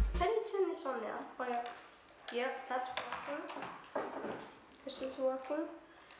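A child's voice going on without clear words, high in pitch and rising and falling, with a few small plastic clicks and taps from the toy car and its remote being handled. Electronic music cuts off just after the start.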